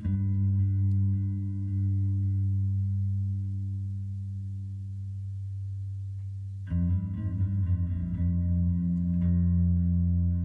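A live band playing slow, sustained music through effects: deep held notes ring out and slowly fade, with a new low chord struck just as it begins and another about two-thirds of the way through.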